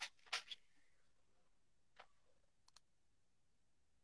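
Near silence: quiet room tone with a few faint, short clicks.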